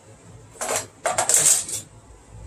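Small metal hand tool clinking and scraping: a short rattle about half a second in, then a louder run of quick scraping strokes.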